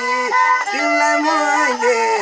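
Bowed fiddle playing a folk melody: sustained notes joined by short slides in pitch, with no voice.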